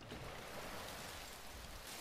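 Steady rain falling, heard as an even hiss that starts suddenly: rain sound from the anime soundtrack being played.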